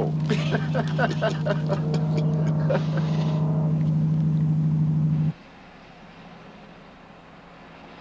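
Steady low engine drone of a vehicle, with men's voices over it for the first few seconds. It cuts off abruptly about five seconds in, leaving only a faint hiss.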